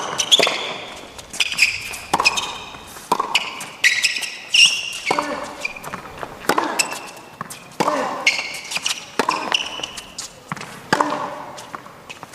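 Tennis rally on an indoor hard court: sharp racquet strikes and ball bounces about every second or so, with short high squeaks of players' shoes between them.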